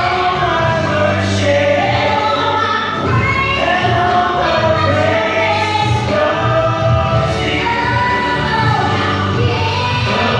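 Gospel worship song led by a woman's voice sung into a microphone and amplified, over instrumental accompaniment with a steady bass line. The singing holds and bends long notes without a break.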